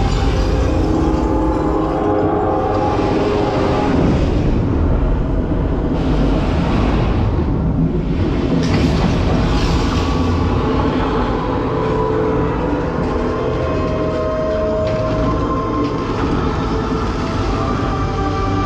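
Dark-ride show soundtrack played loud: a continuous low rumble of effects under held musical tones.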